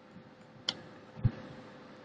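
A sharp plastic click about two-thirds of a second in, then a short low thump, as a finger pushes a keyboard retaining latch into place at the top edge of an HP Compaq 8510p laptop keyboard.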